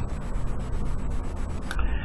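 A fine, rapid rubbing and rustling noise close to the microphone that changes character near the end.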